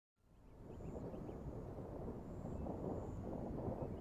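Low, steady outdoor rumble of wind noise that fades in from silence at the very start.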